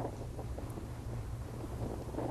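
Distant Proton-M rocket's first-stage engines during ascent, heard as a steady low rumble with a wind-like hiss over it.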